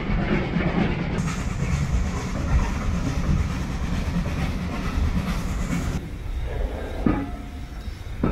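Steam-hauled train running along the line, heard from a carriage: a steady, dense rumble of wheels on rails. About six seconds in the sound drops suddenly quieter, and a sharp knock follows a second later.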